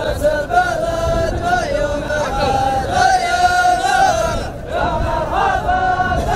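A large group of men chanting in unison in a Dhofari hbout, holding long notes phrase after phrase, with a short break about four and a half seconds in.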